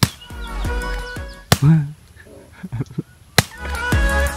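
Background pop music that cuts out for about two seconds in the middle, the gap opened and closed by two sharp cracks.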